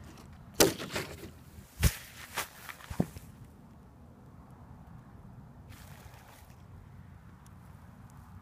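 Handling noise from a handheld phone microphone: four or five sharp knocks and bumps in the first three seconds, then a faint steady outdoor hush with a short rustle around six seconds in.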